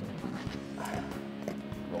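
Jack crevalle croaking as it is held out of the water, over steady background music.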